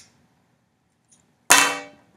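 Near silence, then about one and a half seconds in a single sharp metallic clack that rings briefly: a flip-top metal lighter snapping shut after a cigarette is lit.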